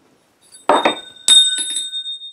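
A steel small-block Chevy engine valve dropped onto a concrete floor. It strikes twice, about half a second apart, the second hit louder, and each hit leaves a high metallic ringing that hangs on.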